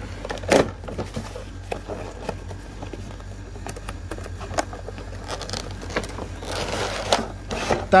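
A cardboard box being opened by hand: clicks and crackles as the flap is worked loose, with a louder crack about half a second in. Near the end there is a longer scraping rustle as the clear plastic case slides out of the cardboard sleeve.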